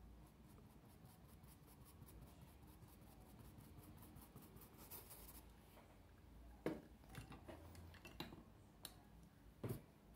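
Faint, fast scratching of a paintbrush working thick paint into cloth, followed by a few separate light knocks in the last few seconds.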